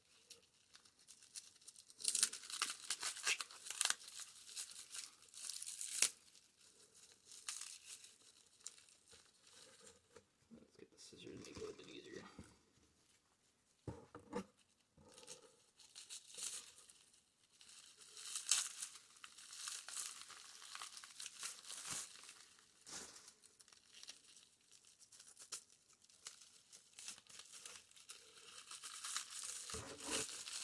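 Clear plastic wrap and tape around a test tube crinkling and tearing as it is pulled and cut away, in irregular bursts, with a few sharp clicks near the middle.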